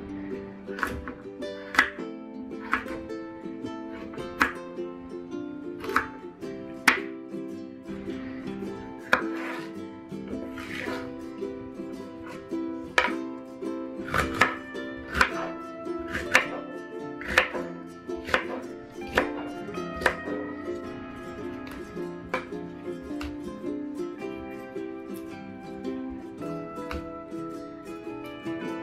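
Chef's knife chopping vegetables on a wooden cutting board, sharp chops about once a second, over steady background music.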